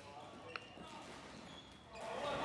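Faint indoor hall ambience with a single sharp click about half a second in, the plastic floorball being struck.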